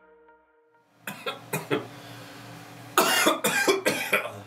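The last note of a soft song fades out in the first second, then a man coughs repeatedly: a few short coughs, then a louder run of harder coughs from about three seconds in.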